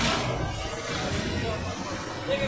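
Busy outdoor street ambience: a steady wash of background noise with distant voices and music playing somewhere in the background.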